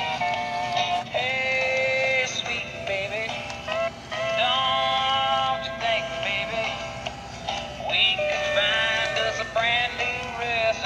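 Gemmy sidestepping animated plush chef pig playing its built-in song through a small speaker: a thin, tinny tune with a singing voice and no bass.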